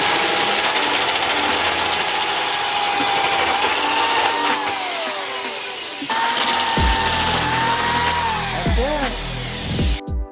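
Corded drill spinning a hole saw in a tube notcher, cutting a notch into a metal tube: a loud, steady whine over grinding noise. It stops briefly about six seconds in, then runs again and winds down near the end.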